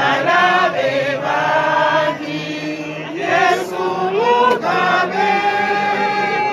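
A group of voices singing a slow, chant-like song, with long held notes that slide from one pitch to the next.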